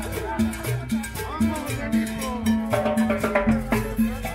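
A live Latin dance band playing an upbeat tune, with a pulsing upright-bass line, drums and cowbell keeping a steady beat.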